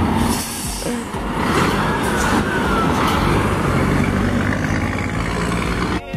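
A Scania 4-series semi-truck with a box trailer passing close by: its diesel engine running and its tyres rushing on the road, at a steady loudness.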